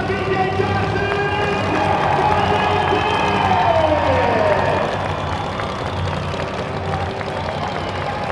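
Monster truck engine running at idle in an echoing indoor arena, with the crowd cheering. Partway through, one of the pitched tones falls in pitch.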